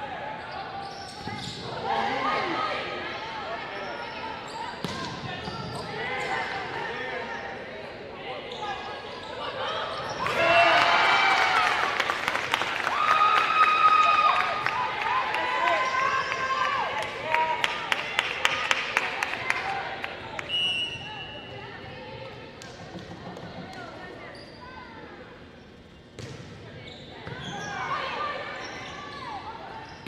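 Volleyball players' voices calling and cheering, loudest about a third of the way in, where several voices shout together after a point. Just past the middle comes a quick run of sharp taps lasting a couple of seconds.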